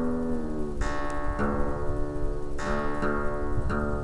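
Acoustic guitar's low string plucked and let ring, plucked again every second or so while it is tuned down from E to D for DADGAD, against a repeating reference note from an online guitar tuner.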